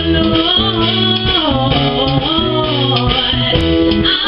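Women singing a worship song together into microphones, with sustained, sliding vocal lines over a guitar and bass accompaniment.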